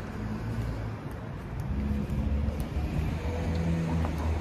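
City street traffic: a low, steady rumble of car engines.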